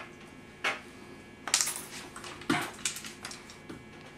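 Upholstery hand tools being handled at the chair: a few light metallic clicks and knocks, with a short cluster about a second and a half in.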